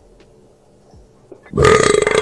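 A loud burp sound effect starts suddenly about one and a half seconds in.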